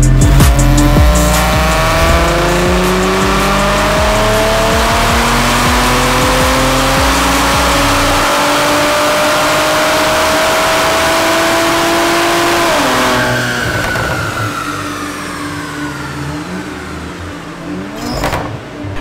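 Infiniti Q50S engine on a chassis dyno during a power pull: the engine note rises steadily for about eleven seconds under full load, then drops sharply as the throttle is released about 13 seconds in and winds down.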